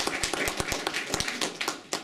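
Applause from a small group of people clapping their hands, thinning out and stopping near the end.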